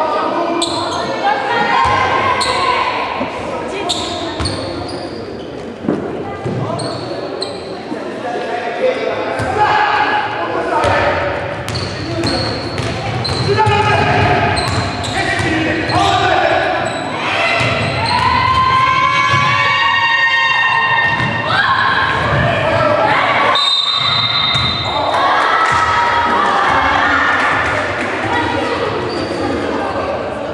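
Basketball bouncing on a wooden gym floor, repeated knocks, with voices calling out, all echoing in a large sports hall.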